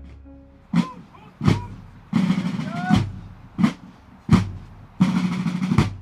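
Drum sting: a few separate sharp drum hits and two short snare-drum rolls, in a march-like pattern, after a music cue fades out.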